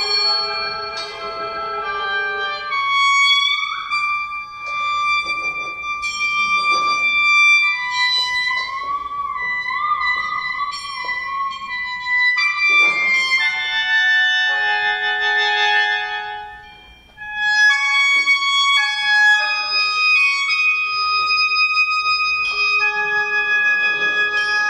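37-reed sheng playing sustained, reedy chords of several held notes that change every few seconds, with a wavering, bending note about ten seconds in and a short fade near seventeen seconds before the chords resume.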